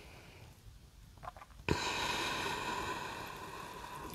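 A woman's long audible breath out, starting suddenly about a second and a half in and slowly fading away, taken while holding a yoga pose.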